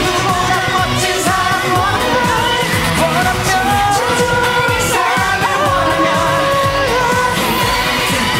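A male K-pop group singing an upbeat pop song over full band accompaniment, the voices holding and sliding between notes.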